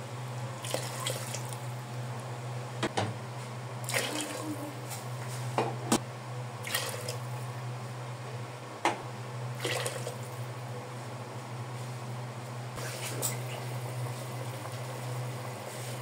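Water poured from a cup into a pot of meat simmering in tomato sauce, in several splashing pours, over a steady low hum.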